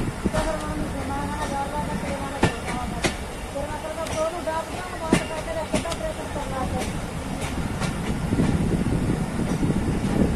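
Passenger train coaches running along the track, heard from an open window: a steady rumble and rush with irregular sharp clacks from the wheels.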